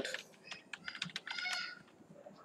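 Typing on a computer keyboard: a run of irregular key clicks. A brief high-pitched sound is heard about one and a half seconds in.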